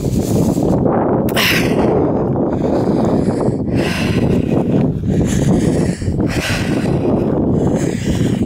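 Wind rumbling on the microphone of someone walking, with regular crunching footsteps on a stony path, roughly one every second and a bit.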